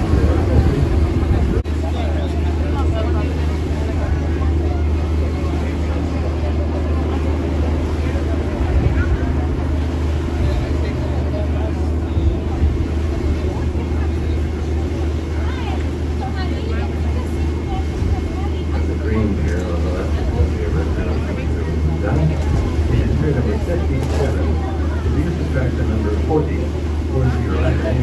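Steady low engine drone of a sightseeing cruise boat under way, with people's voices talking indistinctly over it.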